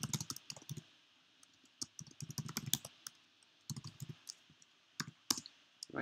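Typing on a computer keyboard: quick runs of key clicks in short bursts, separated by brief pauses.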